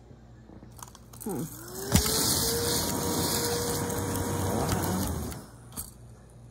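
A motor starts abruptly with a whine that rises in pitch and then holds steady over a loud rushing noise, running for about three seconds before dying away.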